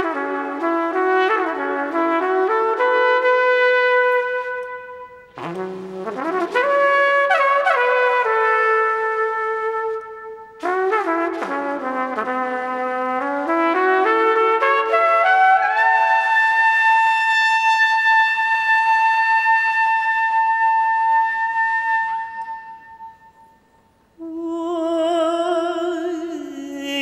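Trumpet solo in three phrases of quick stepping notes, the last ending on a long held high note that fades away. A woman's voice then comes in singing with a wavering pitch near the end.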